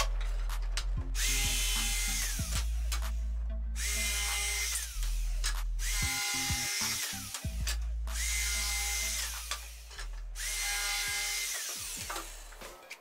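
Cordless drill driving screws into wooden boards in about five separate bursts; each time the motor whine climbs, holds and winds down. Background music with a steady bass runs underneath.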